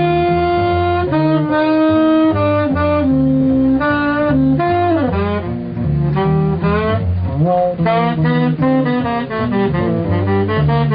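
A tenor saxophone plays a jazz blues melody over a plucked double bass line. The sax holds long notes at first, slides down about halfway, then plays quicker runs near the end.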